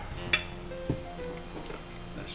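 A fork clinks sharply against a plate about a third of a second in, followed by a softer knock about a second in, over background music.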